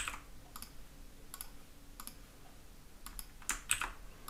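Faint, scattered clicks of a computer keyboard and mouse, about eight separate presses with a quick pair near the end, as keys are copied and pasted into form fields.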